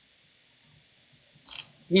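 Near silence broken by a faint click about half a second in and a short rattling clatter about one and a half seconds in, just before a man starts speaking.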